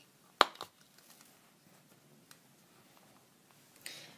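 Handheld hole punch snapping shut through a printed cutout: one sharp click about half a second in, with a smaller click just after as the jaws release, then faint handling ticks.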